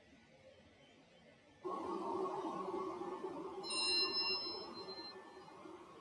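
Steady background room noise comes in suddenly about one and a half seconds in and slowly fades. A ringing metallic ding sounds near the middle and lasts about a second.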